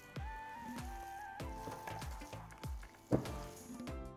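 Background music, a light melody over a soft beat, with faint wet squishing of hands kneading raw ground beef with chopped onion and pepper.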